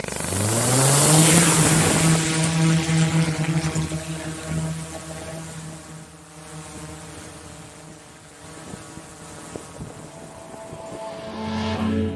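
DJI Inspire quadcopter's motors and propellers spinning up with a rising whine as it lifts off, then holding a steady hovering drone whine as it climbs. There is a rush of air hiss at first, and the sound eases off after a few seconds. Background music comes in near the end.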